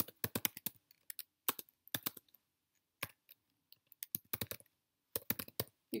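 Typing on a computer keyboard: a quick run of keystrokes in the first second, then a few scattered single keys, then further short runs near the end.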